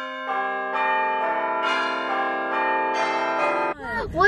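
Bell chimes in an intro jingle: notes struck one after another and left ringing together, then cut off shortly before the end.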